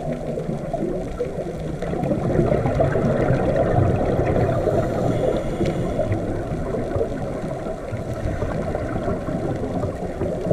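Steady low rushing of water picked up by a camera underwater, even throughout with no distinct clicks, bubbles or calls.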